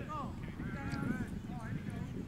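Faint outdoor field ambience: a low rumble with distant voices and short calls, none of them clear speech.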